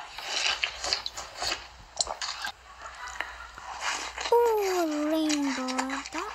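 Close-miked ASMR eating sounds: crackly biting and chewing with sharp crunchy clicks, busiest in the first couple of seconds. Near the end a girl's voice draws out a long "ohh", sliding down in pitch.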